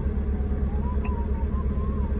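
Semi-truck engine idling steadily, heard inside the cab as a low, even rumble. A faint wavering tone sounds through the second half.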